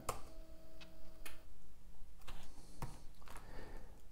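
Laptop keyboard being typed on: several scattered key clicks, spaced irregularly.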